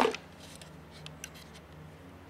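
A few faint, short clicks and light handling noise from hands on a small model engine and a plastic fuel bottle, over a low steady hum.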